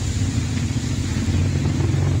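A steady low rumble with an even hiss over it, unchanging throughout.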